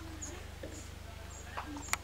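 Quiet room sound over a steady low electrical hum, with short high chirps recurring about every half second and a single sharp click near the end.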